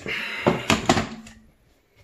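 Stainless steel dog bowl being set down into a raised feeder stand: a shuffle of handling noise with three quick metal clinks about half a second to one second in.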